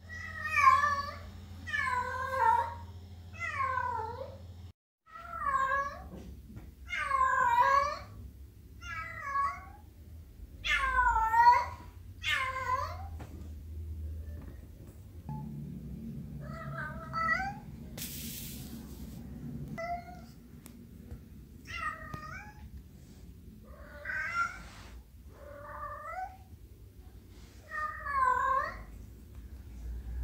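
A domestic cat meowing over and over, about twenty calls each under a second long that bend down and back up in pitch, coming roughly one every second or so. A short rustling noise falls a little past halfway.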